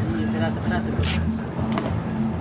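Background music with a steady bass line, over which masking tape rips off its roll in two short hisses about half a second and a second in, as fireworks are taped together.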